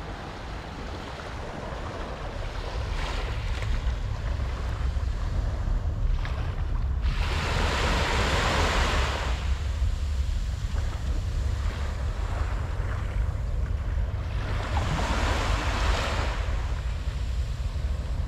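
Small waves breaking and washing up a sandy shore, with wind rumbling on the microphone throughout. Two louder washes of surf come, one about seven seconds in and one about fifteen seconds in.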